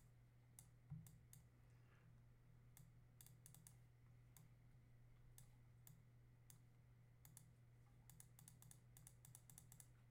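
Near silence with faint, scattered clicks from computer input, thickest near the end, over a steady low hum. A soft thump about a second in is the loudest moment.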